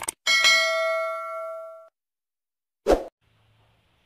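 A mouse-click sound effect, then a bright notification bell ding that rings out and fades over about a second and a half. A single short thump follows about three seconds in.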